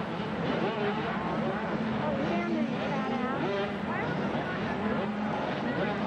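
Several 80cc two-stroke motocross bike engines revving up and down over one another, over a steady engine drone.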